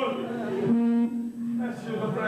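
A man's voice through a PA: ragged vocalising that breaks into one long held note of about a second in the middle, then goes on vocalising.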